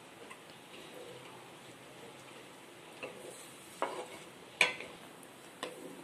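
Wooden spatula stirring a thin gram-flour and yogurt curry in a metal kadai over a faint steady hiss. It knocks sharply against the pan a few times in the second half, loudest near the end.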